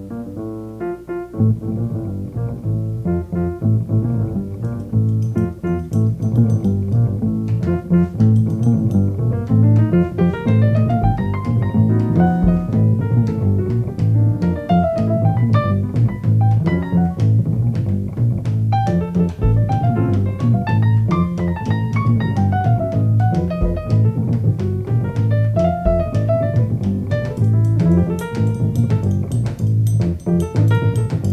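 Jazz group playing live: acoustic piano, plucked upright double bass and hollow-body electric guitar, with a drum kit. The bass comes in about a second and a half in, and the playing grows busier and louder over the first few seconds.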